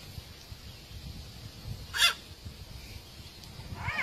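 One short, high-pitched squeal about halfway through, over a low background of outdoor noise. Just before the end a baby starts a laughing squeal.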